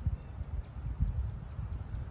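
Wind buffeting a phone microphone outdoors: an uneven, gusty low rumble with a couple of stronger thumps, near the start and about a second in.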